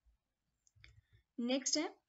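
A few faint clicks of a computer mouse advancing a presentation slide, followed near the end by a brief spoken word.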